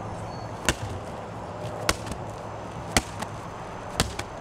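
A heavy medicine ball slammed down onto concrete, three or four sharp thuds about a second apart, each repeat of the overhead-throw exercise.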